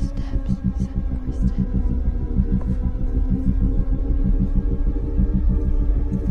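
Tense film underscore: a low, throbbing drone made of several held tones, with a fast, even pulse running through it.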